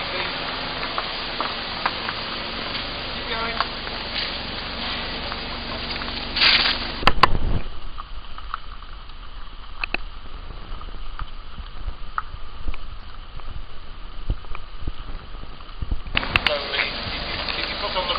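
Faint, indistinct talking over steady outdoor noise, with loud bumps about seven seconds in, then a quieter stretch broken by scattered clicks before the noise picks up again near the end.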